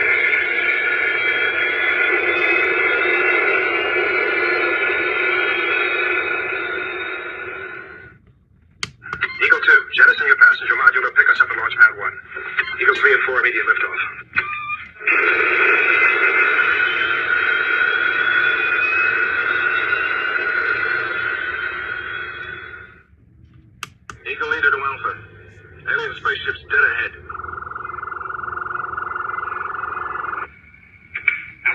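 The electronic Space: 1999 launch pad's built-in speaker playing its soundtrack. A long rushing engine sound with a slowly rising whine breaks off at about eight seconds, choppy broken bursts of radio-like sound follow, and a second long engine rush runs from about fifteen to twenty-three seconds. More choppy bursts and a steady tone come near the end.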